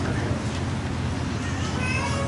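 A pause in speech over a microphone system: a steady low hum with faint room noise, and a faint, brief high-pitched sound near the end.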